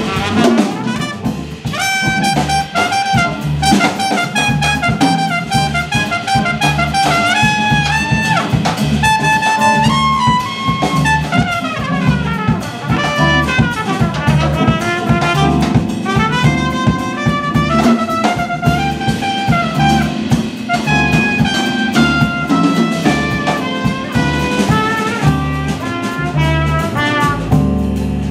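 Live jazz: a trumpet plays a running melodic line over upright bass and drums.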